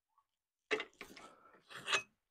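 A few short, quiet scrapes and clunks as a freshly bent steel bracket is freed from a bench vise and lifted out: three brief handling sounds, starting a little over half a second in.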